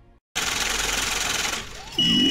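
A fading music tail cuts to a short gap, then the song's intro comes in with a dense, gritty noise that drops in level shortly before the end.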